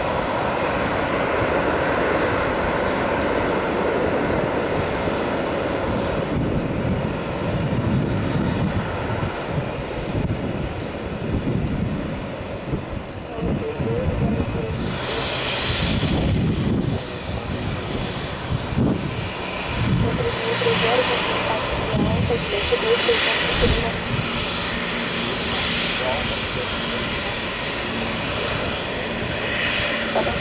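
Embraer E195 airliner's turbofan engines running at taxi power as the jet taxis by, a loud, continuous jet engine noise that grows more uneven about halfway through.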